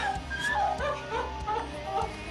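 A child crying in short, high, wavering sobs during a tearful embrace, over background music.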